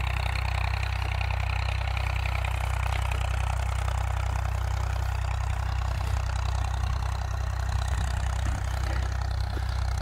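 IMT 539 tractor's three-cylinder diesel engine running steadily as the tractor drives slowly along.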